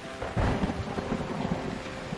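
Steady rain falling, with a low rumble swelling up about half a second in.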